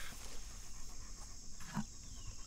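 Insects chirring steadily at a high pitch, with a faint short sound about three-quarters through.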